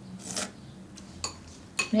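A spoon scraping and clinking against a bowl while someone eats: a short scrape just after the start, then a few light clicks later on.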